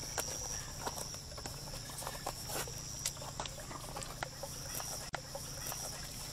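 Laces being pulled and tightened through the eyelets of OMP First Evo suede racing shoes: scattered small clicks and scratches at an irregular pace.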